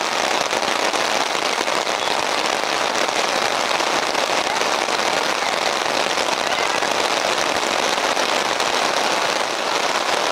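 Heavy rain falling in a steady, loud hiss.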